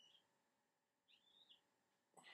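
Near silence, broken by two faint, high-pitched chirps: a short one at the start and a longer, wavering one about a second in.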